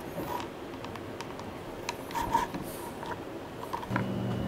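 Thread being pulled tight through leather while hand-stitching a holster: soft rasps with a few light clicks.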